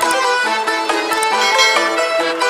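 Fast instrumental music: a quick melody of short, clipped notes with no deep bass.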